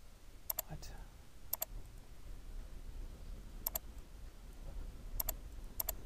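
Computer mouse button clicked in quick double-clicks: five pairs of short, sharp clicks spread irregularly over a few seconds, over a faint low room hum.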